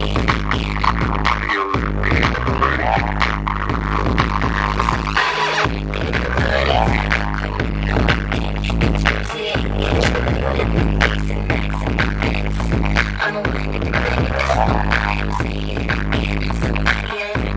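Loud electronic dance music with a steady bass line that drops out briefly about every four seconds, with a gliding melodic or vocal line above it.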